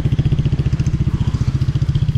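A small engine running steadily, with an even low pulse of roughly a dozen beats a second.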